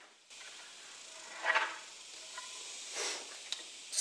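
Faint steady hiss with a few soft handling noises and one light click as a wooden board is picked up and moved about.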